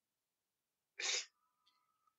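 One short, sharp breathy burst from a person about a second in, between stretches of near silence.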